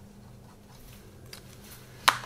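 Faint scratching of a marker pen writing a number on a grey plastic model-kit part still on its sprue, with a couple of light ticks a little past the middle.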